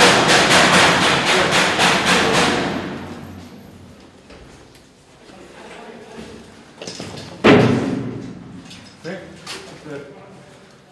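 Gunfire inside a concrete building: a rapid string of sharp shots, about six a second, echoing through the rooms and tailing off after about three seconds. One more single loud bang comes about seven and a half seconds in, then a few lighter knocks.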